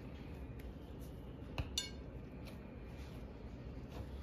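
Quiet handling of dough in the kitchen, with two light clinks about halfway through as a hand or bracelet touches the ceramic plate.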